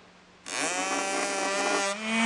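Small brushed DC motor starting up about half a second in, its whine rising in pitch as it spins up to full speed and then running steadily at full power, drawing a little over half an amp. It falters briefly near the end.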